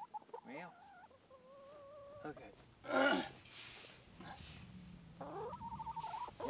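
Hens calling: a few drawn-out, wavering notes, one held for about a second, with a single spoken word in between.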